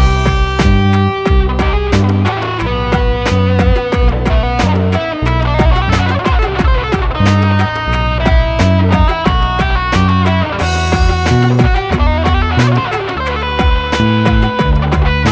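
Koyabu 12-string tap guitar played by two-handed tapping: a flamenco piece with a low bass line under a melody of quick, closely spaced notes.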